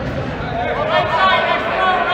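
Several players' voices calling out and talking over one another across a gymnasium, with no words clear enough to make out.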